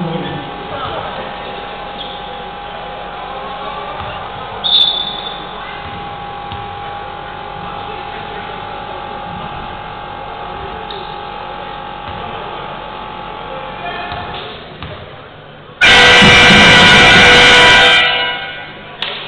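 Basketball hall crowd ambience with a steady held tone, a brief high whistle about five seconds in, and a loud horn blast lasting about two seconds near the end.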